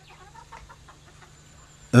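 Chickens clucking faintly.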